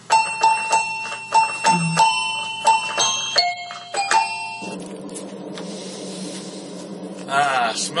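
A short chiming melody of bell-like notes, about three strikes a second, with a couple of lower notes toward its end. It stops about four and a half seconds in, leaving a steady low hum and hiss.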